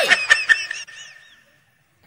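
A woman's shrill, high-pitched shout of "Hey!", loudest at the very start and fading away within about a second and a half.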